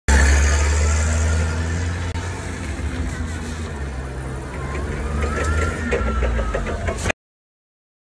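Engine of an LPG-powered Toyota Tonero 25 forklift running with a steady low drone as it drives around. There are some clicks and rattles late on, and the sound cuts off abruptly about seven seconds in.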